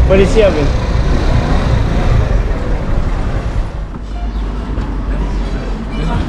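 Loud, steady street noise with a heavy low rumble, typical of town traffic, after a brief word spoken at the start.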